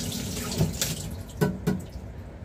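Kitchen faucet running as a lotus root is washed under it, with a few sharp knocks against the sink, the loudest about halfway through and again shortly after.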